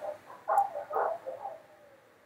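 A few quiet, short, croaky voice sounds from a person, fading out, then the sound cuts off to dead silence near the end.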